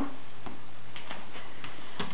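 A few faint, irregular clicks from a dog's claws on the floor as it pulls a toy along, over a steady low hiss.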